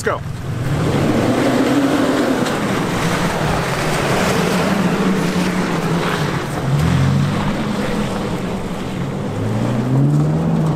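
2021 Toyota Tacoma TRD Off-Road's V6 engine pulling the truck up a rocky dirt trail, over a steady rush of tyre and trail noise. The engine note rises twice, about two-thirds of the way through and again near the end.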